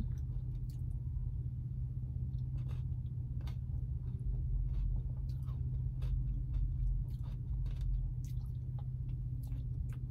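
Close-miked eating sounds: soft chewing and small mouth clicks on a spoonful of soft-serve ice cream with crunchy bits. Under them runs a steady low hum of an idling engine.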